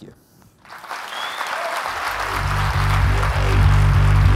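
Audience applauding at the end of a talk. About two seconds in, electronic music with a heavy bass joins it and grows louder.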